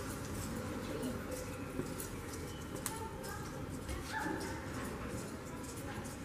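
A few short, high animal calls, about three to four and a half seconds in, over a steady background of noise and faint voices.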